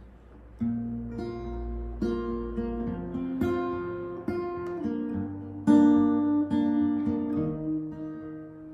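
Acoustic guitar playing the opening chords of a song's intro. It comes in about half a second in, and each chord starts with a strum and rings on; the strongest strum falls a little past the middle.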